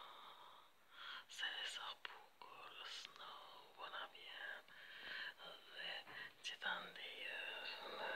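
A person whispering softly in short phrases.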